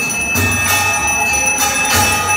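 Temple aarti bells ringing continuously, with a steady high ring, and a low beat pulsing beneath them from about half a second in.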